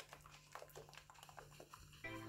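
Very faint sloshing and light clicks from a small closed plastic barrel-slime container being shaken to mix its contents, close to near silence.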